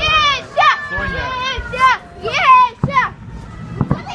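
A child's high-pitched shouts and squeals of excitement, followed near the end by a few sharp bangs from the fireworks display.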